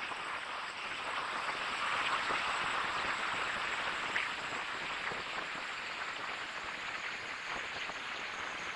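Musique concrète sound texture: a dense, steady hiss that swells about two seconds in and eases off again, with a few faint clicks.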